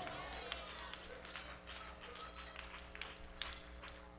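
Quiet pause: a steady low electrical hum with faint, scattered small ticks and knocks in a large room.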